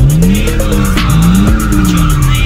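BMW E30 drift car's engine revving up and down twice while its tyres squeal through a slide, with music playing over it.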